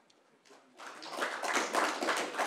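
A room of people applauding, starting about a second in after a brief near silence and building quickly.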